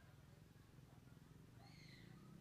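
Near silence: a faint, steady low hum, with one faint, brief high call near the end.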